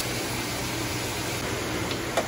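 Potatoes and wild mushrooms frying in oil in a pan: a steady, even sizzling hiss.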